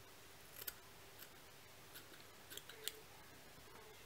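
Small fly-tying scissors trimming synthetic fibre on a fly: several faint, short snips at irregular intervals.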